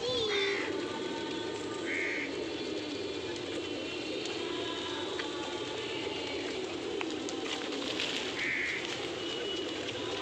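A flock of pigeons cooing steadily and continuously, with three short, higher-pitched calls cutting through.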